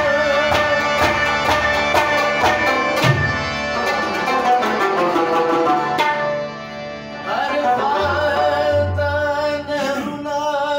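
Live music on Afghan rubab, harmonium and tabla: a quick tabla rhythm runs over held harmonium notes and plucked rubab. The drumming stops about six seconds in. A man's voice then sings over the harmonium near the end.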